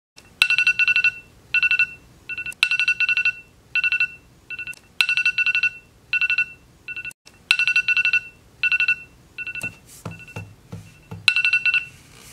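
Smartphone alarm ringing: a repeating pattern of short groups of rapid, high, pulsed beeps. A few soft low knocks come near the end as a hand reaches for the phone.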